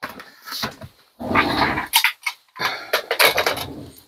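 A dog making rough, low vocal sounds in three bursts of about a second each.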